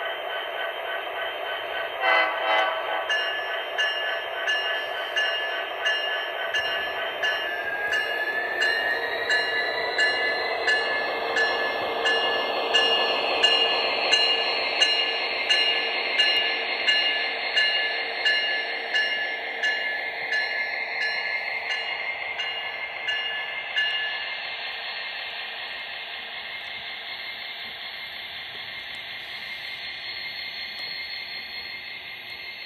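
An HO scale model diesel locomotive's onboard sound plays a diesel engine running with a bell ringing in even strikes about twice a second. The engine pitch rises about eight seconds in as the locomotive pulls by. The bell and engine fade near the end as the train rolls past.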